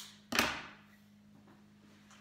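A single thump about half a second in, an object knocked or set down while craft materials are handled on a table, followed by a quiet room with a low steady hum.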